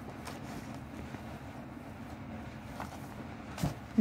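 Steady low background rumble, with a few faint taps and rustles as a plastic-sleeved garment pack is handled; the clearest tap comes near the end.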